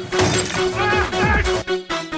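Electronic dance music with a steady beat and repeated falling bass swoops, with a crash of noise right at the start.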